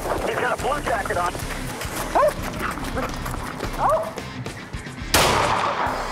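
A German Shepherd police dog barking and yelping excitedly, over music and voices. About five seconds in, a loud, sudden burst of noise cuts in for under a second.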